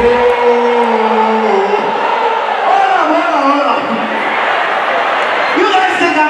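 A man's voice through a stage microphone, drawing out long sung notes rather than ordinary speech, with audience noise underneath.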